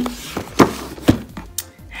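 Cardboard cookie box being turned over and handled on a table: a few sharp thunks and taps, the loudest a little after half a second in and another about a second in.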